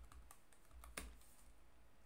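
A few faint computer keyboard keystrokes, the clearest about a second in, over near silence: keys pressed to recall and run a compile command in a terminal.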